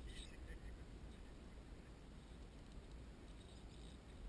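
Near silence: a faint, steady low rumble with a few soft ticks, once about half a second in and again near the end.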